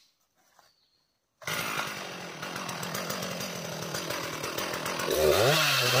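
Two-stroke chainsaw running steadily after a sudden start about a second and a half in, then throttled up near the end with a steep rise in pitch. Its note begins to waver as the bar bites into the base of an anjili tree's trunk.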